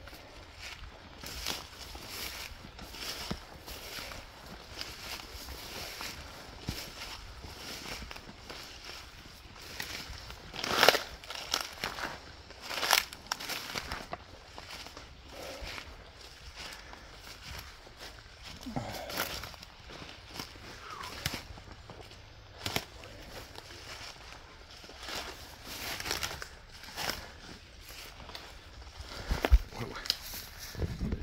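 Footsteps pushing through dense undergrowth: irregular crunching and crackling of dry leaves, palm fronds and ferns underfoot, with one louder crunch about eleven seconds in.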